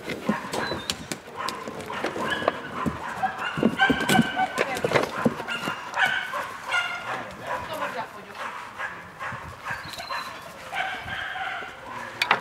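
Puppies yipping and whining in short, high-pitched calls while play-fighting, with scattered knocks and scrapes.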